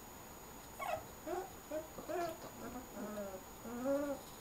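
Two-week-old Borzoi puppies whimpering: a run of six or seven short whines starting about a second in, the loudest one near the end.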